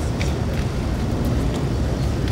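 Steady low rumbling outdoor background noise with a few faint, sharp clicks scattered through it.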